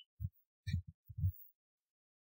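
Computer keyboard keystrokes picked up as a quick run of soft, dull thuds while a short command is typed.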